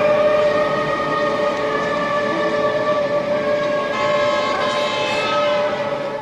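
Film soundtrack: a sustained droning chord of held tones with a dense hissing noise layered over it.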